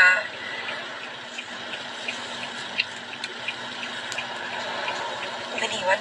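Steady rushing hiss with a faint low hum inside a car cabin, with a few light ticks scattered through it.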